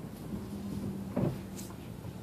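Steady low hum heard from inside a car, with a single short knock a little over a second in.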